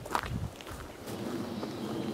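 Footsteps of someone walking on a dirt forest track, with a steady low hum coming in about a second in.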